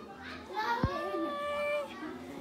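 A child's voice holding one long, steady high note for about a second, with a short knock just as it begins.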